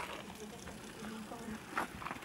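Faint, indistinct voices over low outdoor background noise.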